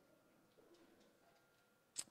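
Near silence: room tone during a pause in speech, with a faint steady hum.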